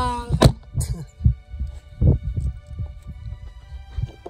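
Wind buffeting a handheld phone's microphone: uneven low rumbling gusts, with a sharp knock about half a second in and a heavy gust about two seconds in.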